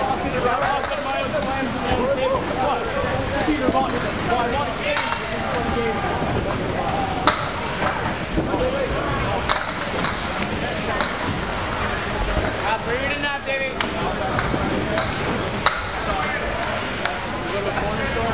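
Candlepin bowling alley: balls rolling on the wooden lanes and sharp clacks of balls hitting the thin pins, over the steady chatter of bowlers. The loudest clacks come about seven seconds in and near the end.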